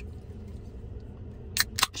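Pull tab of an aluminium energy-drink can being cracked open: two sharp clicks near the end, over a steady low hum.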